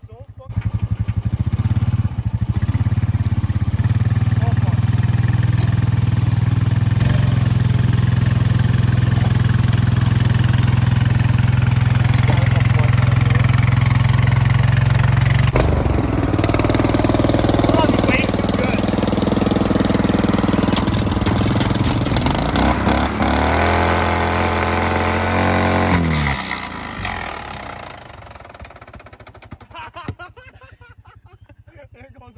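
A small engine running steadily at a low, even note. After a cut about halfway, an engine runs again, its pitch wavering and stepping down, and it shuts off about four seconds before the end.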